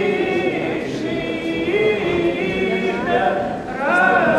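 Unaccompanied Russian traditional folk song sung by a woman and a man together, in long held notes that slide from one pitch to the next.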